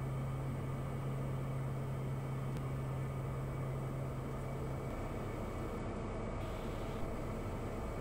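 Steady in-flight cabin drone of a Piper Meridian's PT6A turboprop engine and propeller, heard as an even rushing noise. A low steady hum under it drops away about five seconds in.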